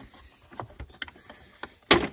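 Plastic rear light cluster of a Fiat Panda being pulled off the car body by hand: a few faint clicks, then a loud sharp snap near the end as it comes free of its clips.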